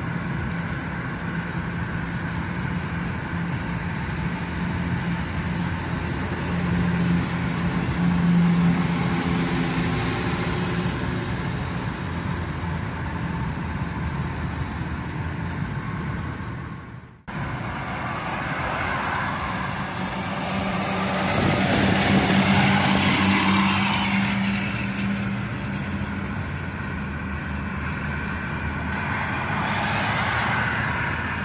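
Car cabin noise while driving at highway speed: a steady mix of engine drone and tyre and wind noise. It breaks off abruptly about halfway through, then swells louder for a few seconds.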